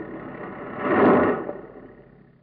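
Radio sound effect of a tractor crashing into a wooden barn and the barn collapsing. A rush of crashing noise swells to a peak about a second in and dies away, over the tractor engine running.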